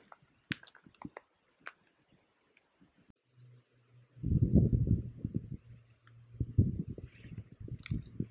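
A few sharp clicks, then a cigar being lit with a lighter and drawn on: from about four seconds in, a run of loud, rapid low puffs and pops over a faint steady hum.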